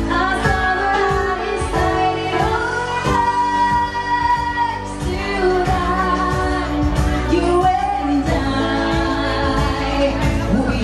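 A woman singing a pop song live into a microphone over amplified accompaniment with electric guitar, holding one long note about three seconds in.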